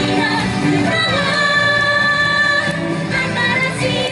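Female idol group singing a pop song into handheld microphones over band music through a PA, with a single note held for about a second in the middle.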